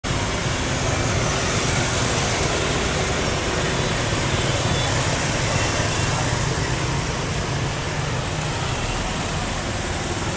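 Steady street traffic made mostly of small motor scooters and motorbikes riding past, their engines blending into a continuous hum with no single vehicle standing out.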